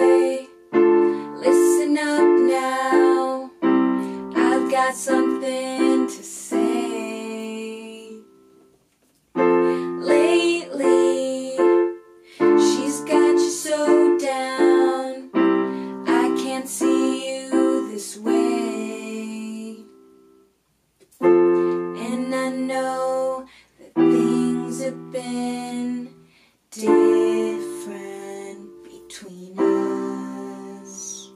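Casio electronic keyboard playing sustained piano chords in phrases broken by short pauses, accompanying two girls singing a slow pop ballad.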